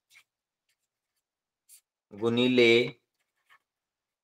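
Pen writing on paper: a few faint, short scratching strokes spaced about a second or more apart.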